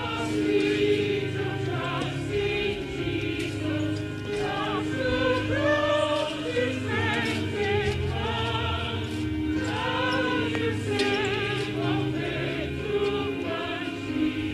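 A choir singing a slow hymn, the voices wavering with vibrato over steady held low notes.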